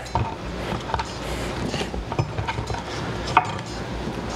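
Cucumber slices being gathered off a wooden cutting board and dropped into a glass mason jar: a few light clicks and taps over soft handling noise, the sharpest click about three and a half seconds in.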